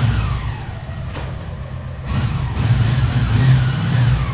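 Honda CX650 motorcycle's V-twin engine running and being revved, the pitch rising and falling back twice, louder in the second half.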